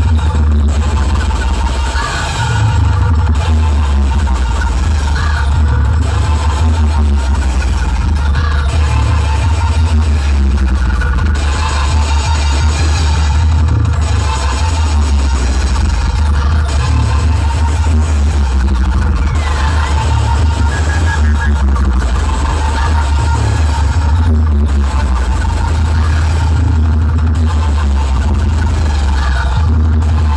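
Electronic dance music played very loud through a DJ sound system's towering speaker stacks, dominated by a heavy, constant bass. The upper sounds drop out briefly every couple of seconds.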